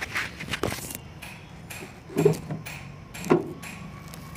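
A hand handling the metal tool box of a Swaraj 735 FE tractor: a series of light clicks and taps, with two louder knocks about two and three seconds in.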